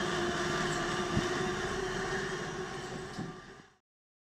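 Fixed-gear bicycle ridden on aluminium training rollers: a steady whirring hum from the tyres and spinning roller drums, with a single knock about a second in. The hum fades out near the end.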